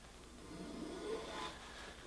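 Faint, soft swish of a block plane drawn along a curved wooden handrail, swelling in the middle and then fading.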